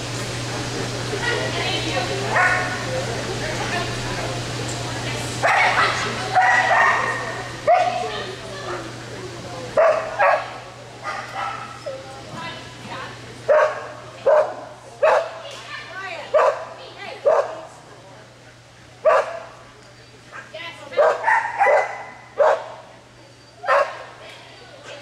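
Dog barking repeatedly while running an agility course: short, sharp barks about once a second, sometimes in quick pairs, through the second half.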